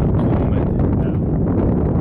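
Wind buffeting the microphone: a loud, steady low rumble with no clear pitch or rhythm.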